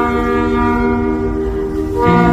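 Saxophone duet holding one long sustained note over a backing track from a portable loudspeaker, the note easing off slightly toward the end.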